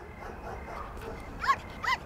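A dog gives two short, high yips, a little under half a second apart, over a faint steady background hum.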